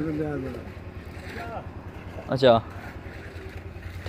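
A man's voice in conversation: a phrase trailing off at the start, a faint remark in the middle and a short "accha" about two and a half seconds in, over a steady low rumble.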